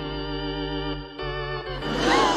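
Stadium organ playing the national anthem in sustained held chords, moving to a new chord about a second in.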